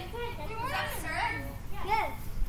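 Boys' voices calling out to each other during play, over a steady low hum.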